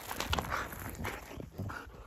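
Siberian husky and a man play-fighting on a dirt trail: irregular scuffles and rustles of bodies, fur and clothing against the ground, a little louder in the first half.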